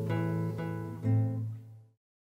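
Classical guitar with a capo playing the last notes of a fingerpicked melody in A minor: a few plucked notes, then a low bass note with a chord about a second in that rings, dies away and cuts off just before the end.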